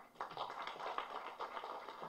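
Audience applauding, faint and steady, starting about a quarter of a second in.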